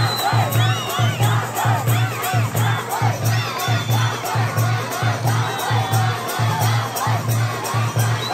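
A large crowd shouting and cheering, many voices overlapping and rising and falling, over a fast, even low beat.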